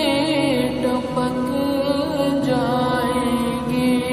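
Background vocal music: a chanted song in Urdu or Arabic, its voice wavering up and down over steady held tones underneath.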